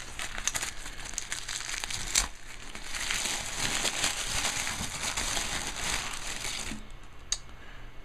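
Tissue paper crinkling and rustling as hands rummage through it, with a sharp crackle about two seconds in; the rustling stops about a second before the end.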